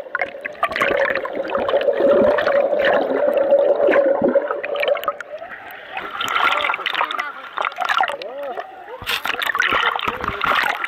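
Sea water sloshing and gurgling around a camera as it dips under and breaks the surface, with a steady hum through the first half and muffled voices.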